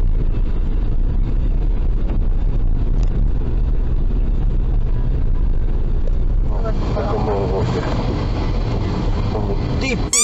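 Steady in-cabin road and engine noise from a car driving at speed on a highway, picked up by a dashcam. Voices talking join in about two thirds of the way through.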